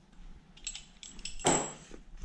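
Metal hand tools clinking as they are handled and set down: a few light metallic clicks with a faint ring, then a louder clatter about one and a half seconds in.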